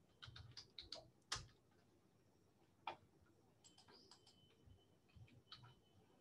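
Faint computer keyboard keystrokes and clicks, scattered in short clusters.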